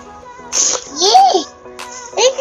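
A small child's short vocal outbursts over steady background music: a breathy burst about half a second in, then a squeal that rises and falls in pitch.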